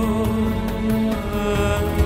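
Background music with long held notes.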